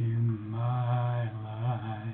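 A man singing a held, wavering line in a low voice over a ringing acoustic guitar chord.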